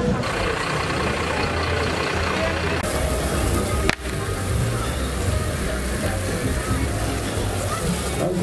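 Outdoor crowd voices over a steady rushing noise; from about halfway a fire hose is spraying a strong jet of water.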